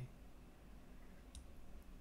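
A few faint computer mouse clicks in the second half, over a low steady hum.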